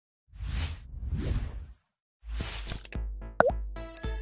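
Logo intro sting: two quick whooshes, then a beat with low pulses starts about halfway, a short falling bloop just after, and a bright chime rings out at the end as the logo lands.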